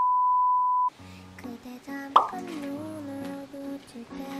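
A steady, high test-tone beep, as played over TV colour bars, lasting about a second and cutting off sharply. Softer music with a wavering melody follows.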